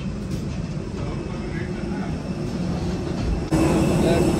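Steady low rumble of aircraft and ventilation noise in a jet bridge. About three and a half seconds in it steps louder, with a steady low hum, at the aircraft's door.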